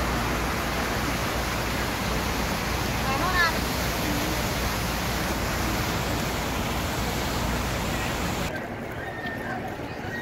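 Wind buffeting the microphone: a steady rushing noise with a low rumble, with a brief distant voice about three seconds in. The noise drops off suddenly about eight and a half seconds in.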